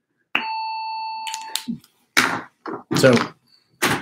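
A single electronic chime from a talking clock: one bright bell-like tone that starts suddenly and rings for just over a second before cutting off.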